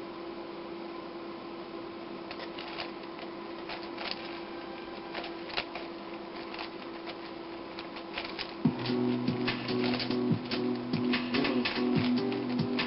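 Layers of a plastic 5x5 puzzle cube being turned, a run of irregular clicks that gets quicker after the first couple of seconds. Background music comes in about nine seconds in and runs under the clicking.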